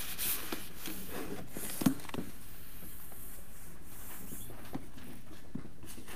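Faint rustling of Bible pages being turned, with a few small handling knocks and one sharper click about two seconds in, over a steady low hiss.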